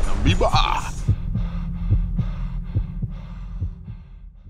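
Electronic outro sound effect: a brief rising glide, then a steady throbbing pulse at about two and a half beats a second that fades away.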